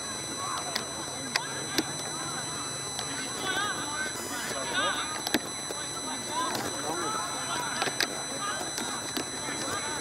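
Indistinct, overlapping shouting from players and onlookers during a scuffle at an Australian rules football match, with several sharp clicks scattered through it.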